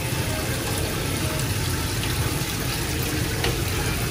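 Hot tap water running steadily into a stainless steel sink.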